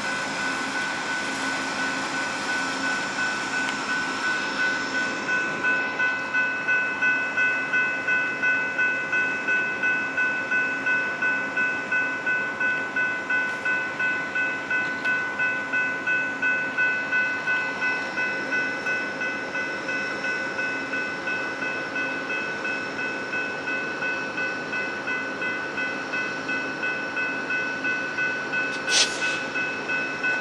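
Railroad grade-crossing bell ringing steadily at about two strikes a second, over the low hum of a stopped diesel passenger train idling.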